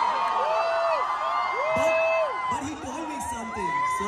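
Concert crowd cheering and whooping: several drawn-out shouts rise and fall over a background of many voices.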